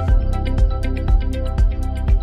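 Background music with a steady beat, about two a second, and short plucked notes over a deep bass.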